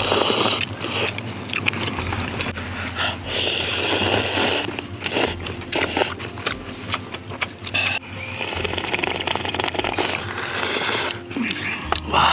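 Jjamppong noodles and soup being slurped from a bowl in several long, hissing draws, the longest near the end, with small clicks in between.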